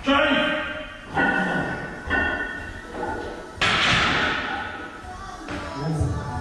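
Voices and music, then a loud clank about three and a half seconds in that fades away: a barbell loaded to 165 kg being set back in the rack after a box squat.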